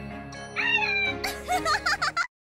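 Background music with a high, wavering cartoon sound effect laid over it from about half a second in, its pitch gliding and wobbling, strongest near the end.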